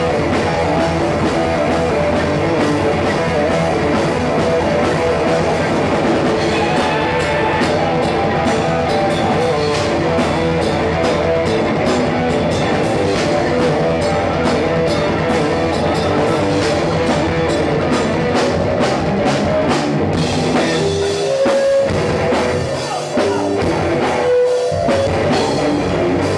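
A rock band playing live, amplified electric guitar and bass over a drum kit keeping a steady beat.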